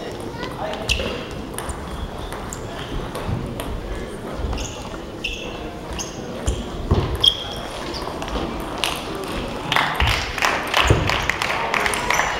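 Indistinct chatter of spectators echoing in a large sports hall, with scattered sharp clicks of table tennis balls. The clicks come more often near the end.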